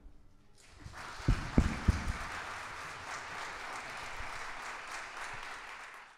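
Audience applause starting about a second in, once the song has ended, with three low thumps in quick succession soon after it begins.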